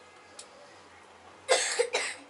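A person coughing twice in quick succession, loudly, about a second and a half in.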